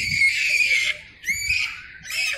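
A young child squealing at a high pitch: one long squeal lasting about a second, then a shorter one rising and falling in pitch.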